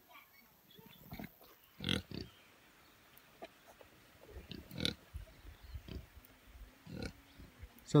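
Pigs grunting quietly: a few short, low grunts scattered through the second half.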